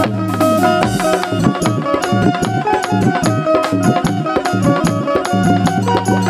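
Instrumental interlude of a live devotional bhajan: hand drums play a quick, steady beat under a held, sustained melody line, with no singing.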